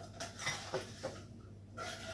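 A few faint clicks and light knocks, kitchen utensils and spice containers being handled beside a glass bowl, in a quiet room.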